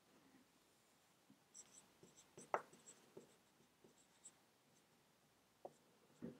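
Dry-erase marker writing on a whiteboard: a run of faint, short squeaks and taps as the marker makes its strokes, starting about a second and a half in and ending a little past four seconds, the sharpest stroke about halfway through.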